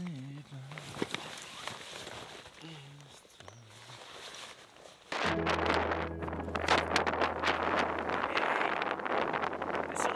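Quiet outdoor sound at first, then from about halfway through, strong wind buffeting the camera's microphone in gusts over a steady low hum.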